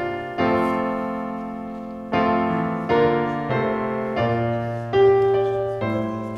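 Piano playing a slow hymn, chords struck roughly once a second and each left to fade; the loudest chord comes about five seconds in.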